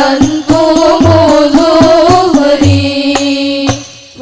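Female solo voice singing an Islamic devotional song (sholawat) in long, wavering held notes, accompanied by rebana frame drums playing a steady pattern of sharp strokes and deeper bass-drum thuds. Near the end the voice and drums drop away briefly.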